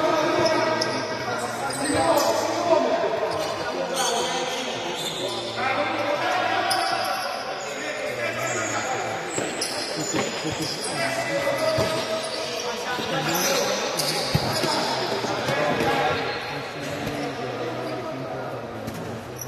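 Indoor futsal play echoing in a large hall: shoes squeaking on the court, the ball struck a few times, and players shouting.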